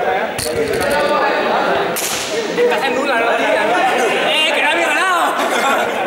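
Several people talking over one another in a large sports hall, with a sharp smack about two seconds in.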